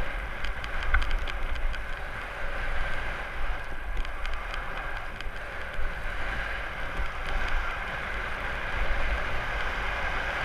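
Snowboard sliding down a groomed slope: the board scraping over the snow in a steady hiss with a few short clicks, under low wind buffeting on the action camera's microphone.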